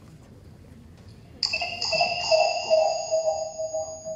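An electronic ringing tone made of several pitches at once. It starts suddenly about one and a half seconds in and fades away over about two seconds.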